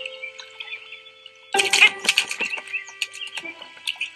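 Soundtrack of an animated short: held music notes with faint high chirps, then, about a second and a half in, a sudden loud run of flapping, rustling and clattering strokes lasting about two seconds as a heron lands on the edge of a small boat.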